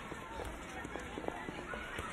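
Children playing in the background: distant chatter and calls mixed with running footsteps, with no one voice standing out.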